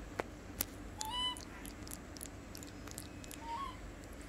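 Baby monkey giving two short, high-pitched calls that rise at the end, about two seconds apart. Two sharp clicks come just before the first call.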